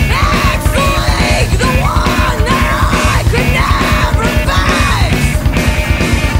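Loud noise-rock music: distorted guitars over driving drums, with a high wailing line that arches up and down about once a second.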